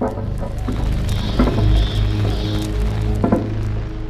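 Dark, horror-style transition music built on a deep, steady bass drone, with a higher band of sound joining it from about a second in to nearly three seconds.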